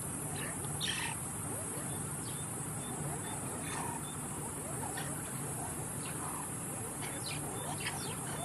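A pack of mongooses giving scattered short, high chirps, alarm calls aimed at a python they are mobbing. A steady high insect drone runs underneath.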